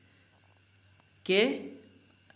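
A man's voice says one short syllable about a second and a quarter in, over a steady, unbroken high-pitched whine in the background.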